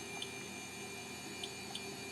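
Low, steady hum from a running HP 1660C logic analyzer, with a few faint, soft ticks.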